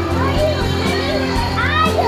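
Background music with a steady bass line, over which a young child's high voice calls out twice in short rising-and-falling bursts.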